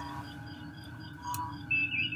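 Faint electronic background of steady humming tones with a few short, soft beeps, one about a second and a half in and a higher one near the end.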